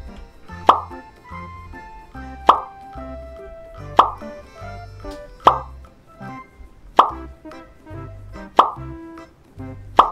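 Cartoon pop sound effect, six pops about a second and a half apart, each marking a new number box popping onto the slide, over steady background music with a bass line.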